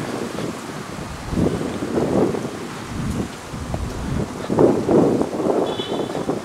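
Wind buffeting the microphone in uneven gusts that swell and fade.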